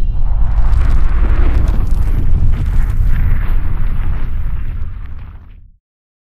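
A loud, deep rumbling explosion sound effect that fades away to silence near the end.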